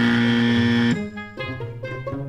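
A "wrong answer" buzzer sound effect: one loud, steady, harsh tone lasting about a second that cuts off suddenly. It is followed by light background music.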